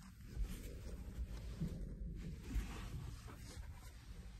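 Faint rustling and scratching of hands stroking and holding a dog's coat and harness, over a low rumble.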